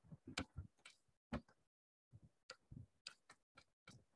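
Computer keyboard being typed on: a faint, irregular run of quick key clicks.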